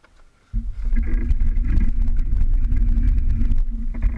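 125cc two-stroke kart engine firing up about half a second in and running at a steady idle, loud and close.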